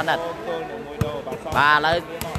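A volleyball smacked once by a player's hand about a second in, a short sharp hit heard under the commentator's voice.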